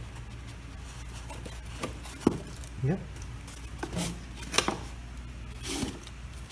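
Handling noise of PVC pipe against foam pool-noodle floats: a few sharp plastic clicks and knocks, the loudest a little over two seconds in, over a steady low hum.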